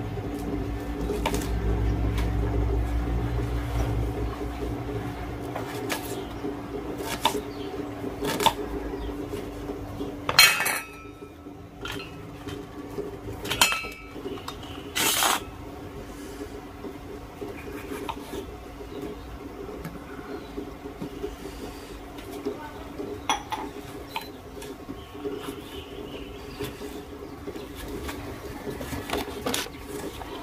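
Small kitchen knife cutting onion and tomato on a round wooden chopping board: scattered sharp clicks and knocks of the blade on the board, irregularly spaced, with a few louder ones around the middle. A steady low hum runs underneath.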